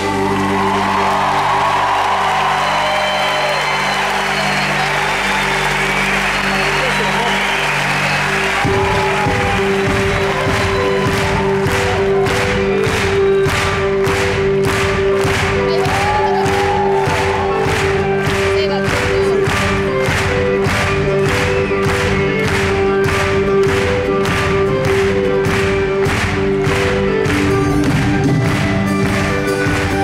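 Argentine folk band playing live: sustained chords over audience noise, then about nine seconds in the full band comes in with a steady drum beat of about two beats a second.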